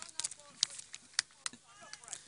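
Faint, distant voices of players and spectators on an outdoor pitch, with several sharp, short clicks scattered through it.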